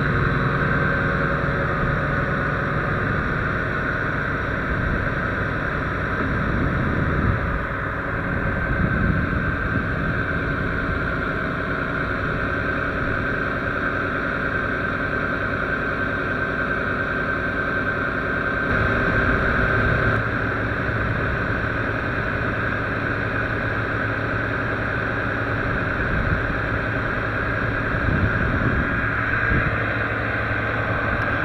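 Large truck engine idling steadily, with a steady high whine over the low rumble.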